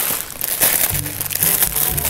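Clear plastic packaging bag crinkling as it is handled and pulled from around a bucket hat, over background music whose low notes come in about a second in.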